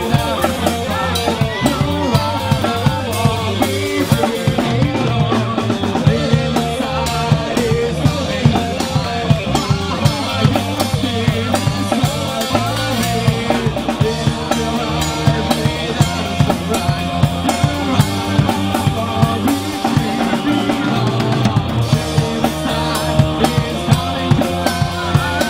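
Live rock band playing an instrumental passage: electric guitar and bass guitar over a drum kit keeping a steady beat.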